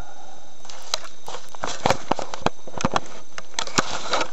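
Irregular sharp clicks and knocks, several a second, over a faint rustling hiss that starts about half a second in: handling noise of work at the van window.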